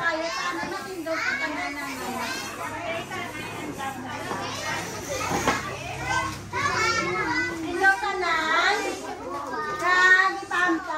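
A crowd of children chattering and calling out all at once, many high voices overlapping.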